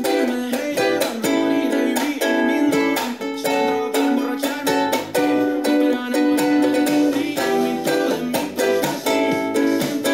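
Ukulele strummed in a steady rhythm, with sharp strum strokes and muted percussive chucks between the ringing chords. The chords follow a minor-key progression of E minor, A7, F♯ minor, B minor and D major 7.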